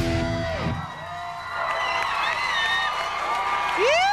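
A live rock band with electric guitars finishes a song, the music stopping under a second in. A studio crowd then cheers and whoops, with one loud rising-and-falling whoop near the end.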